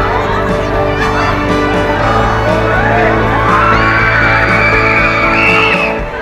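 Riders on a swinging pirate-ship ride screaming and whooping together, many voices swelling from about halfway through, over music with steady held notes.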